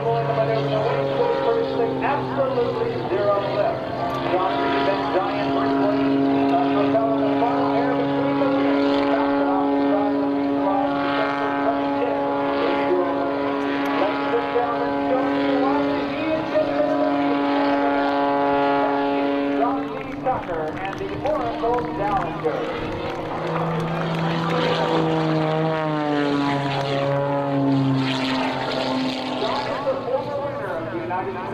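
Aerobatic biplane's piston engine and propeller droning steadily at high power through a slow, nose-high pass. The pitch holds steady for about two-thirds of the time, then drops and wavers in the last third as the power changes.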